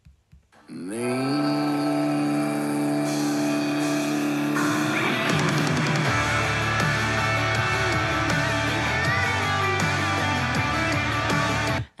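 A rock song with distorted electric guitars played back as the full mix, guitar and band together. It starts about a second in on long held guitar notes, the full band with drums comes in about five seconds in, and it cuts off suddenly just before the end.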